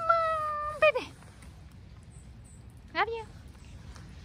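A woman's voice calling to the backyard animals: one drawn-out, high sing-song call held for about a second. Later, about three seconds in, comes one short meow-like call that rises and falls.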